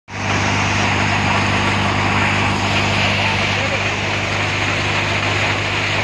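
NVT thresher with a side basket running steadily while threshing chickpeas: a loud, unbroken machine noise with a constant low hum.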